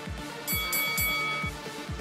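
Background electronic workout music with a steady beat of about two kick-drum hits a second. A bright ringing tone sounds over it from about half a second in, lasting about a second.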